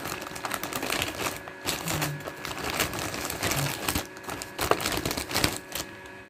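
Plastic courier mailer bag crinkling and rustling as it is pulled open by hand, a dense, irregular crackle.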